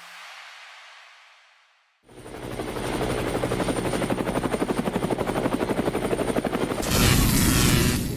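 A soft whoosh fades out, then a loud, rapid, even chopping sound like helicopter rotors builds up and turns harsher about a second before the end.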